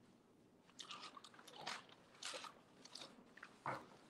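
Faint crinkling and rustling from hands handling and opening a sewn fabric purse, in a few short bursts with the loudest near the end.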